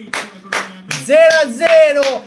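A man claps his hands three times, about 0.4 s apart, then lets out a loud, high-pitched sung vocal sound with no clear words.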